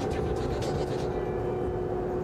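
A steady droning hum: one held tone with a fainter higher line above it over a low rumbling noise, unchanging throughout.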